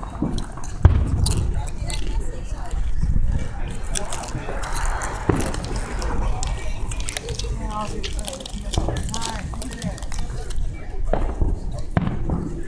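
Aerial fireworks going off: a few sharp bangs, the loudest about a second in, others near the middle and near the end, over a steady low rumble and indistinct voices of people talking.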